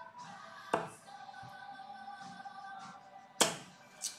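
Two darts striking a dartboard: a short thud about a second in and a louder one near the end, over steady background music.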